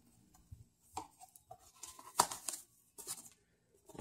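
A cardboard tablet box being slid out of its sleeve and its lid opened: a few short, soft scrapes and taps of cardboard, the loudest a little past two seconds in.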